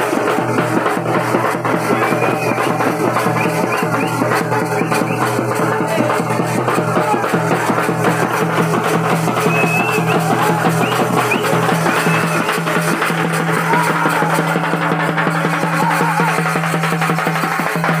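Live folk music for a village goddess festival: a strapped drum beaten in a fast, driving rhythm, with small hand cymbals clashing along and a man singing through a microphone and loudspeaker over a steady low drone.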